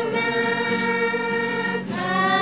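Voices singing together in a choir-like blend, holding one long note that breaks off near the end before the next note starts.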